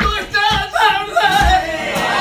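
Male flamenco singer singing a soleá, the voice bending and wavering through drawn-out melismatic runs over flamenco guitar, with a few low thumps beneath.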